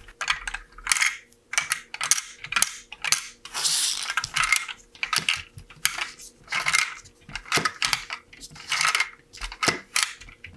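Hard plastic LEGO bricks clicking and clattering in quick, irregular bursts, with a longer rattle a few seconds in. The source is a hand-worked LEGO domino-laying machine handling its dominoes, each a stack of 1x3 bricks, and setting them down on the table.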